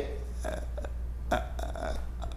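A pause in a man's speech: a steady low hum with two faint, brief throat or mouth noises, about half a second in and again near one and a half seconds.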